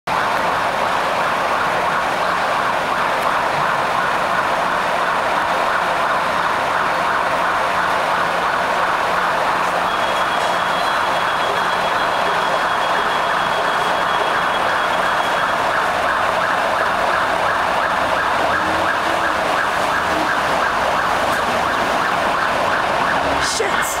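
Electronic fire engine sirens sounding continuously and steady in level as the engines approach, with street traffic beneath.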